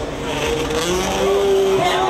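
Freestyle motocross bike's engine revving hard in a held, slightly gliding note as the rider runs up and launches off the jump ramp.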